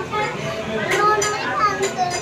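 People talking, with a child's voice among them.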